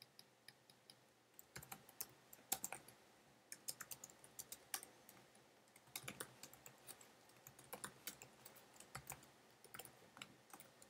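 Faint typing on a computer keyboard: irregular runs of key clicks with short pauses between them, sparse at first and then in quicker bursts.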